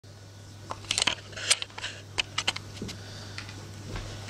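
A Doberman puppy's claws scratching and clicking as she paws at the bed: irregular sharp clicks and short scratches, thickest in the first half and thinning out after.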